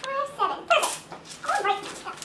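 A girl's high-pitched voice making short wordless cries that slide up and down in pitch, in two bursts about a second apart.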